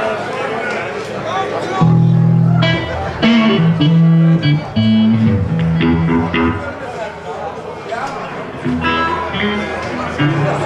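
Electric guitars and bass guitar played through stage amplifiers in short, loose phrases of held low notes and higher picked notes, not yet a full song.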